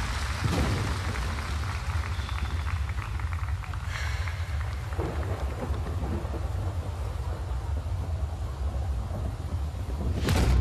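Rain and thunder sound effect: a steady hiss of rain over a deep, continuous rumble.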